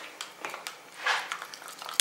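A metal spoon stirring thick corn-syrup fake blood in a small plastic tub, with a string of light clicks and scrapes against the tub and a brief louder swish about a second in.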